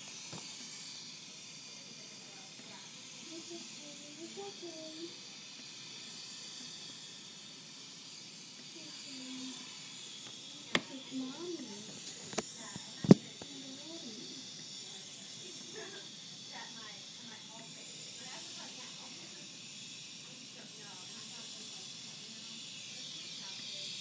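Steady hiss of air from a neonatal incubator's breathing equipment, with faint murmuring voices and a few sharp clicks about eleven to thirteen seconds in, the last one the loudest.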